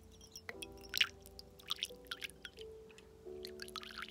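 A thin stream of water pouring from a small teapot into a metal cup, splashing and dripping, with the loudest splash about a second in. Soft background music plays underneath.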